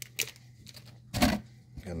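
Trading cards being handled and slid between the fingers: a faint click, then one short rustle a little over a second in.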